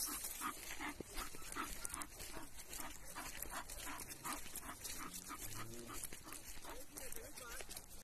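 Bull terrier panting steadily on a walk, about two to three breaths a second.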